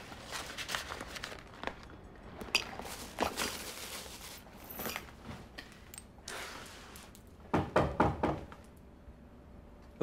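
Soft rustling and small clicks of a handbag and clothing being handled, then a quick run of four or five knocks on a door about three-quarters of the way through.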